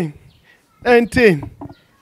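A man's voice calling out short 'eh' sounds that drop in pitch, two close together about a second in and a few shorter ones after.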